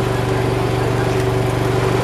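A motor running with a steady, unchanging low hum.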